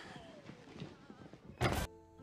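Faint background sound of a TV dialogue scene, then a man says 'ten' near the end.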